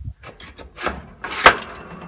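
A few knocks and a clank as a knobby-tired wheel is fitted onto a metal spindle, the loudest clank about one and a half seconds in.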